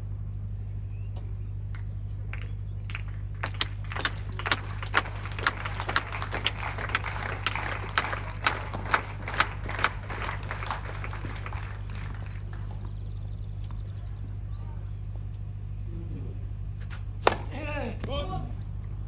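Spectators applauding at a tennis match: one pair of hands claps close by about twice a second for some seven seconds, over wider applause that swells and then fades. A single sharp knock comes near the end.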